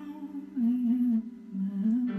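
A voice humming a slow, wavering melody in two short phrases with a brief break about halfway through, over faint song accompaniment.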